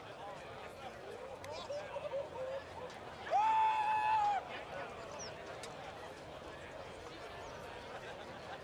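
Open-air racetrack ambience with distant, indistinct voices. About three seconds in, a loud, steady horn-like tone sounds for about a second, then cuts off.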